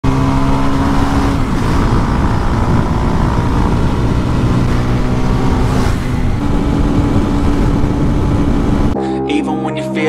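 Motorcycle engine and exhaust running at a steady cruising speed of about 80 km/h, its note shifting slightly a couple of times. About nine seconds in it cuts off suddenly and music takes over.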